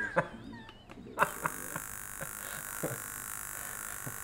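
SciAps Z-200 handheld laser analyzer running a test on a stainless steel sample: a click about a second in, then a steady hiss of argon purge gas with a few light clicks over it.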